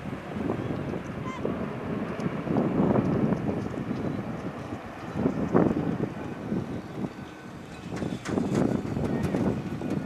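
Airbus A380's four turbofan engines rumbling as the airliner flies overhead, an uneven roar that swells and fades several times, with a few harsher crackles near the end.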